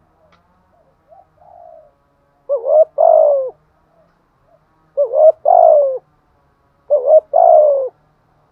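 Spotted dove cooing: three loud phrases about two seconds apart, each a quick double note followed by a longer note that falls in pitch, after a few faint soft notes.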